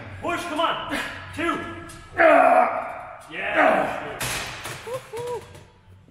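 Men's shouts and strained grunts during a hard set of seated cable rows: a series of short cries, loudest a long yell about two seconds in, tailing off into shorter, quieter sounds near the end.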